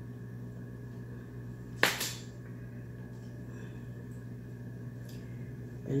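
A single sharp click of hard kitchenware being handled comes about two seconds in, with a fainter tick near the end, over a steady low hum.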